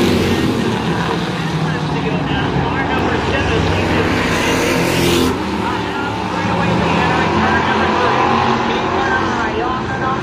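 Several street stock race cars' engines running together at racing speed as the pack laps a paved oval short track, a steady drone of engines that changes abruptly about five seconds in.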